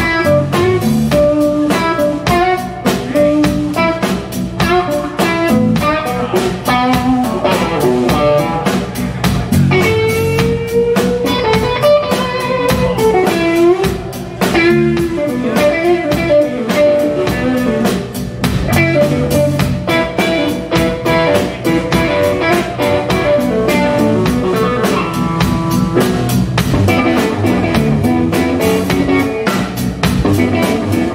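Live blues band playing an instrumental passage: a lead electric guitar line with bent, gliding notes over electric bass and a drum kit keeping a steady beat.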